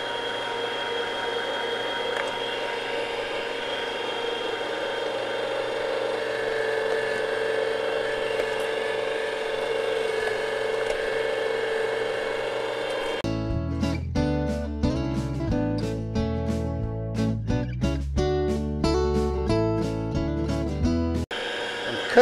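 Small electric motor of a Weston Deluxe electric tomato strainer running steadily with a constant whine while tomatoes are pushed through it. About 13 seconds in it gives way to background music with guitar and bass for about eight seconds, and the motor hum comes back just before the end.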